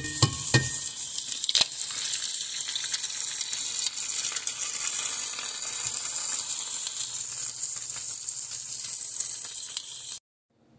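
Chopped tomato, green pepper and onion with an egg frying in hot oil in a cast iron skillet: a steady, loud sizzle, with a few sharp clicks in the first two seconds.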